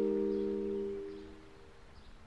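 Background music: a few held acoustic guitar notes ring out and fade away, mostly gone about a second and a half in.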